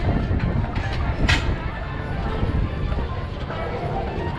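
Horse-drawn streetcar rolling along street-embedded rails: a steady low rumble of its wheels on the track, with two sharp clicks about a second apart near the start.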